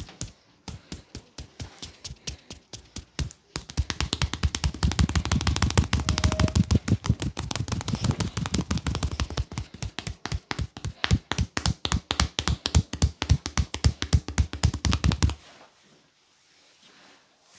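Rapid percussive hand-massage strikes on the body. Light, fast taps give way about three and a half seconds in to heavier, denser strikes with a dull thud, which stop suddenly near the end.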